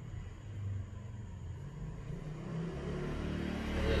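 A low engine rumble that grows steadily louder.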